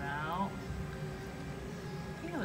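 A short, high vocal sound falling in pitch at the start, then steady background noise with a faint hum.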